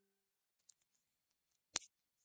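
A loud, steady, very high-pitched electronic tone that starts about half a second in, with a brief click near the end.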